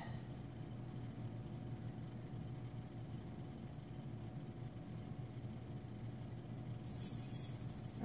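A small jeweler's gas torch burning with a gentle flame, a steady low rumble, as it heats a hardened steel scribe to draw its temper. A brief hiss comes near the end.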